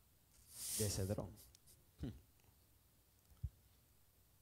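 A man's voice through a microphone in a quiet room: an audible breath followed by a short vocal sound about a second in, another brief vocal sound at about two seconds, and a faint click near the end.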